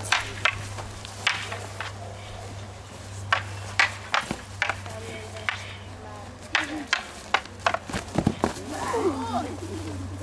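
Wooden combat staffs clacking against each other in a sparring bout: a quick, irregular series of sharp knocks. The knocks stop about a second before the end, and voices follow.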